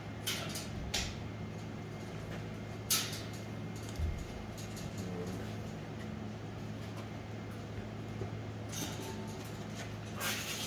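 Wire crate rattling and clicking a handful of times as a pole is worked through its bars, with a few sharp knocks spread through and a small cluster near the end, over a steady low hum.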